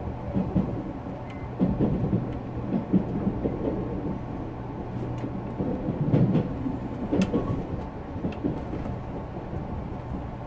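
Running noise of a JR Central Series 383 tilting electric multiple unit at speed, heard from inside the front car: a steady low hum and rumble, with irregular knocks and rattles of the wheels on the track, loudest about six seconds in.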